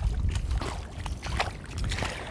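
Feet wading through ankle-deep seawater, sloshing and splashing a few times, with wind rumbling on the microphone.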